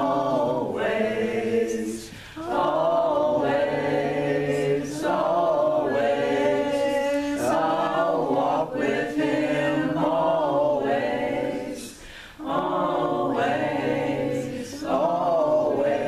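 Voices singing a slow children's worship song in long held phrases, with short breaks for breath about two seconds in and again about twelve seconds in.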